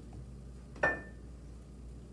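A single sharp clink of kitchenware, a glass bottle or utensil knocking on something hard, about a second in, with a brief high ring after it.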